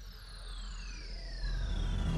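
Cinematic intro sound effect: two high whistling tones glide steadily downward over a deep rumble that grows louder.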